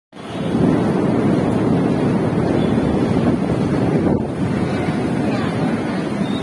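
Strong storm wind blowing hard across the phone's microphone: a loud, steady rushing noise.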